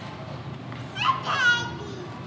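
A toddler's single high-pitched vocal squeal, starting about a second in and lasting under a second, over steady low background noise.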